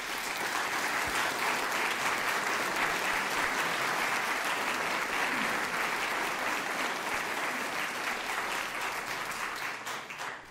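A seated audience of a few dozen people applauding, a steady sustained round of clapping that tapers slightly near the end.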